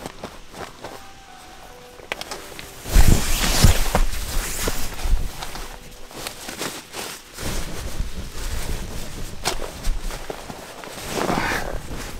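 Rustling and irregular thumps of a nylon air sleeping pad and tent floor being handled and lain on, with a loud low thump about three seconds in.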